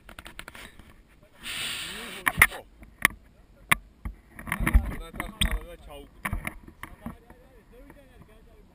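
Rustling and several sharp clicks as a paragliding harness's straps and buckles are handled and fastened, with short bits of low voices.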